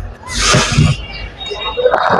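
A man sobbing into a close stage microphone: a loud breathy gasping sob about half a second in, then a wavering crying voice near the end.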